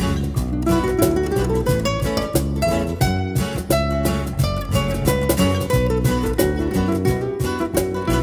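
Background music: a guitar-led track with quick plucked notes over a steady beat.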